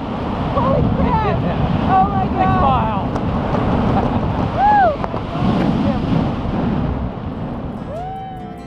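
Wind rushing over the camera microphone in tandem skydive freefall, with short whooping yells over it about one to three seconds in and again near five seconds. The wind eases off near the end.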